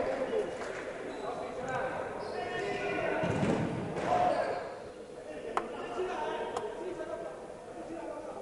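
Live sound of an indoor futsal match in a reverberant sports hall: players' voices calling out, with the ball struck sharply twice, about a second apart, around the middle.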